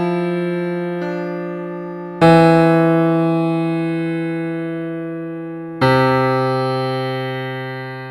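Piano playing slow single low notes, each struck and left to ring and fade; new notes come in about two seconds in and near six seconds in.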